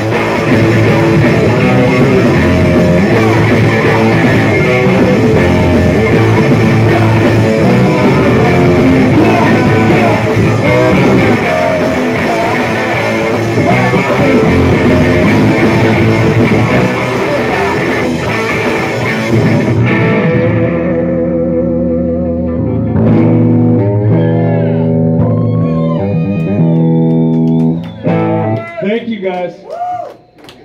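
Live rock band of electric guitar, bass guitar, keyboard and drums playing loud. About twenty seconds in the full band stops, leaving sustained ringing notes with one wavering note, which die away near the end as the song finishes.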